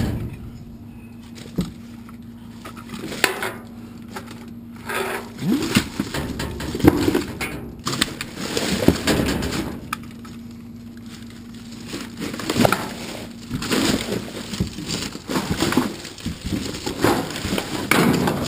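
Trash being rummaged through in a steel dumpster: plastic bags and wrappers crinkling, paper and cardboard shuffling, with irregular clinks and knocks.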